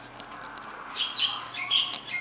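Small birds chirping, a quick run of sharp high calls starting about a second in.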